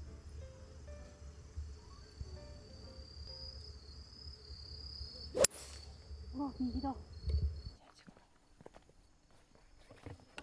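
A single sharp crack of a golf club striking the ball about five seconds in, the loudest sound here, over background music; a short voiced exclamation follows a second later.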